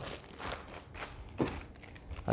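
Faint rustling and crinkling of plastic accessory bags being handled, with a few light clicks.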